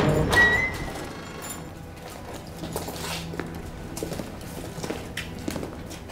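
Film score fading out in the first second, then a run of irregular short knocks and thuds like footsteps on a hard floor, over a faint low hum.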